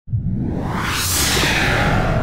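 Intro sound effect: a whoosh that swells to a peak about a second in and fades, over a steady low musical bed.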